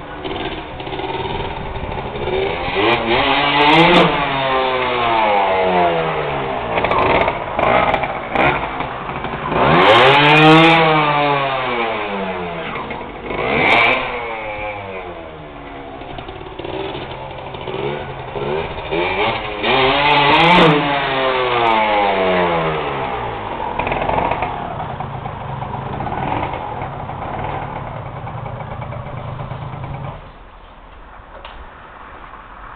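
Small trial motorcycle engine revving up and dropping back again and again, with the biggest rises in pitch about 4, 10, 14 and 20 seconds in. A few sharp clacks come at the peaks.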